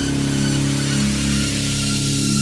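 A steady low synthesized drone made of several held low tones, unchanging in pitch.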